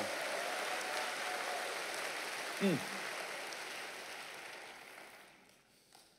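Large congregation applauding in a big auditorium, the clapping dying away over about five seconds.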